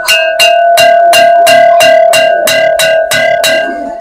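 A crockery dish struck repeatedly, about three taps a second, each tap keeping up one clear bell-like ringing tone.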